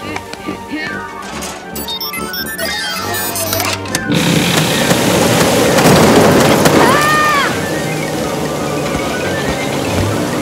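Cartoon background music, then about four seconds in a sudden loud rush of water as a dam bursts, loudest a couple of seconds later and carrying on as a steady gush.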